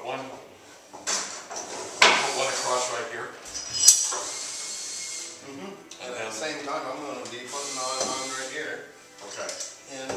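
Indistinct talking between workers, with knocks and clatter of clamps and tools being worked onto a steam-bent wooden rub rail; a sharp knock about two seconds in and a louder one near four seconds, followed by a brief hiss.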